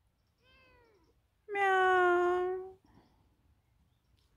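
Ginger stray kitten meowing: a faint short meow about half a second in, then a loud, long meow slowly falling in pitch.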